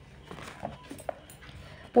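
Faint rustling and light taps of paper as a sheet is moved over an open book, with two brief faint squeaky sounds around the middle. A woman's voice starts at the very end.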